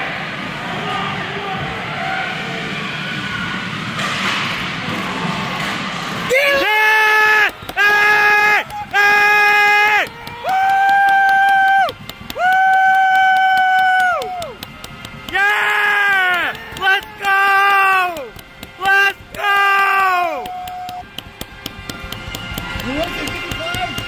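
Arena crowd noise, then from about six seconds in a loud rally tune of held, horn-like notes. It comes in two phrases, each a run of short notes followed by longer held ones.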